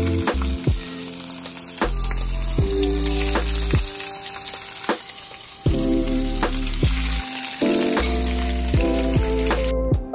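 A lionfish fillet frying in a pan of oil, a steady sizzle that cuts off suddenly just before the end, with music playing underneath.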